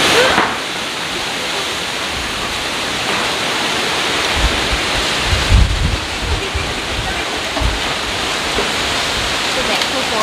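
Strong storm wind rushing through trees and leaves, a dense steady noise that starts suddenly. Gusts buffet the microphone around the middle.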